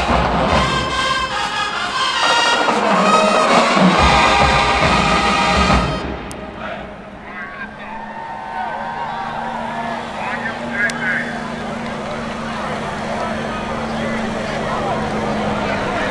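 Marching band brass and drums playing loud, cutting off about six seconds in. After that comes the chatter of band members and crowd, with a low steady hum underneath.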